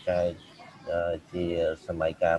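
Speech only: a man lecturing in Khmer in short phrases with brief pauses between them.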